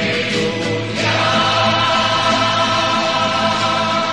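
Choir singing an Easter song of praise, holding long sustained notes, with a new phrase starting about a second in.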